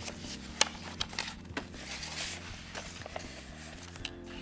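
Sheets of a paper work pad rustling and crinkling as it is lifted, flipped and laid down on the table, with a few sharp taps of the pad and pen against the tabletop, the loudest about half a second in.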